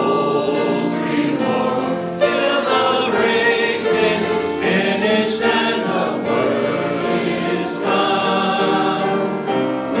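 A church congregation singing a hymn together in many voices, with long held notes that move from phrase to phrase.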